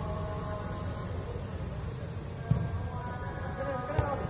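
Ambience of a netted five-a-side turf pitch: a steady low rumble with faint wavering held tones, and a football struck sharply about two and a half seconds in and again near the end.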